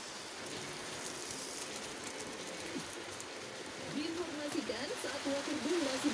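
Television broadcast sound played through a projector's speaker: a steady hiss with fine crackle, then voices coming in and growing louder about four seconds in.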